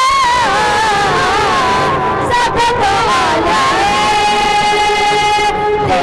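A group singing a worship song with hand clapping, the melody bending up and down, then one long held note from about four seconds in until near the end.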